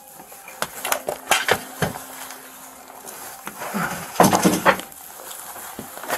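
Scattered light clicks, knocks and clatter of gear and objects handled at close range in a small bathroom during a search, with a louder cluster about four seconds in.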